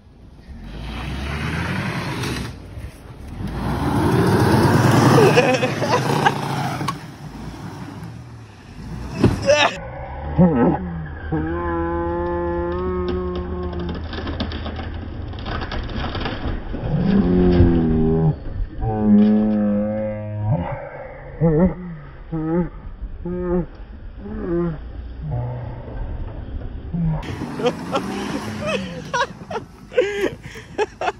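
Compact sedan driven flat out on a dirt trail. At first its engine and tyres make a loud rushing noise, then the engine holds a steady high-revving pitch, drops in pitch, and gives a run of short rev blips.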